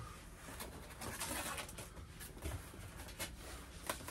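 Packing tape being pulled off a cardboard comic mailer, with scraping and rustling handling noises and a few sharp clicks.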